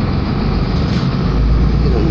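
Steady drone of a moving city bus heard from inside the cabin: engine and road rumble, heaviest in the low end.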